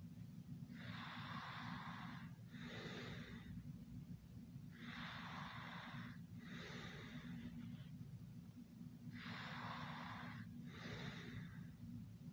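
Slow, noisy breathing: three breaths about four seconds apart, each a longer breath followed by a shorter one, over a steady low hum.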